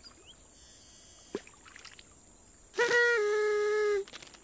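Party blower blown once, a loud, buzzy held tone that starts near the end, dips slightly in pitch after a moment and holds for just over a second. Before it there is only faint background with one small click.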